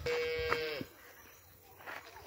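A cow mooing once: a single steady call of under a second that drops in pitch as it ends.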